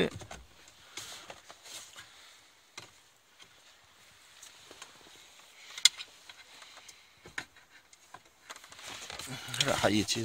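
Scattered faint clicks and taps of hands handling plastic dashboard trim, with one sharp click about six seconds in. A voice comes in near the end.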